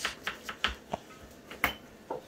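Kitchen knife cutting sponge gourd on a wooden chopping board: about five sharp, irregularly spaced knocks of the blade against the board, the loudest near the end.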